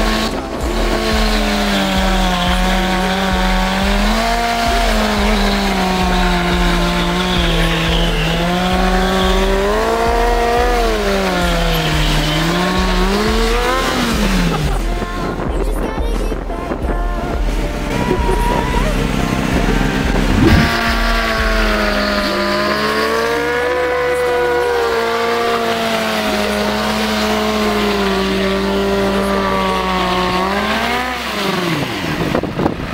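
Honda CBR600F4 inline-four engine held at high revs, the pitch swinging up and down every few seconds as the throttle is worked, with the rear tyre squealing in a rolling burnout.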